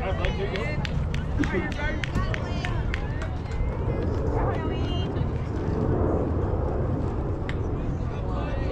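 Distant voices of players and spectators calling out across the ball field, no words clear, over a steady low rumble.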